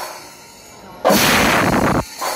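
Kerala temple percussion ensemble (melam) playing a loud, dense burst of drums and cymbals that starts sharply about a second in and stops abruptly, part of a rhythm of bursts about every two seconds.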